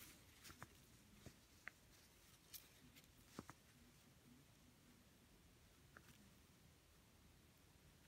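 Near silence: room tone, with a handful of faint, short clicks as a needle and thread are worked through small glass seed beads.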